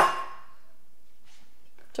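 A single sharp metallic clang with a brief ring, as a wire whisk is put down against a stainless steel mixing bowl.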